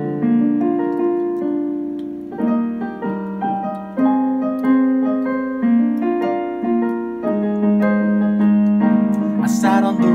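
Casio XW-P1 synthesizer keyboard played with a piano sound: two-handed chords over a bass line, with a new chord struck about every second and the notes left to ring.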